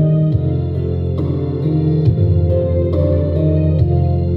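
Instrumental backing track of a slow Korean pop ballad playing its intro: sustained chords over a bass line that changes note a few times, with light regular percussion ticks.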